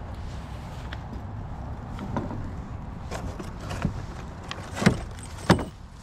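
Small metal rudder hardware clicking and clinking as it is handled, with a few sharp clicks in the second half, the loudest about five and five and a half seconds in, over a steady low rumble.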